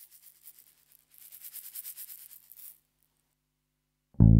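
Faint rhythmic rasping, like a shaker, at about seven pulses a second in two short runs, over a low steady hum: the hushed intro of a rock recording.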